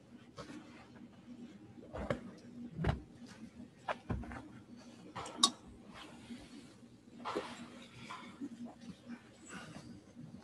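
Scattered faint knocks, clicks and rustles of things being handled, with one sharper click about five and a half seconds in, over a low steady hum.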